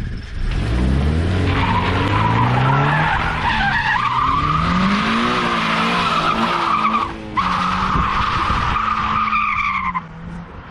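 Freshly rebuilt Subaru FA20 flat-four engine revving hard, climbing in pitch, falling back and climbing again, while the tyres squeal through a long skid. The squeal cuts out briefly about seven seconds in.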